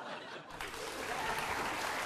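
Studio audience applauding, the clapping starting about half a second in.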